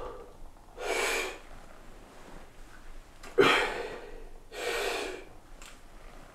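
A man breathing hard through a heavy barbell set, with three loud forceful breaths: one about a second in, a sharper, louder one a little after three seconds, and another just before five seconds.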